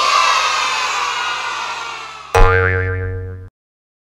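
Cartoon sound effects: a hissy sound that fades away over about two seconds, then a loud springy boing with a wobbling pitch that cuts off suddenly about a second later.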